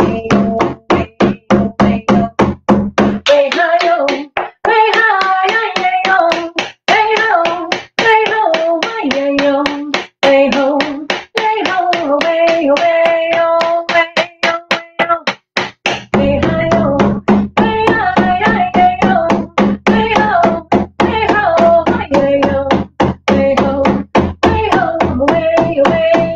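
A woman singing a traditional Indigenous song over a steady hand-drum beat, about three to four strikes a second throughout.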